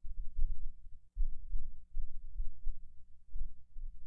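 A low, uneven thudding rumble under a faint steady hum.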